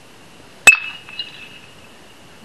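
Metal baseball bat striking a pitched ball once: a sharp, ringing ping that fades over about half a second, followed by a fainter click.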